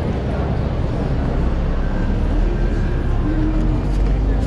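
Busy city street ambience: a steady low traffic rumble, with faint pitched sounds in the second half.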